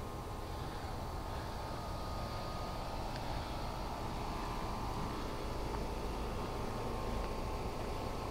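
Steady outdoor background noise with a faint hum and no distinct events.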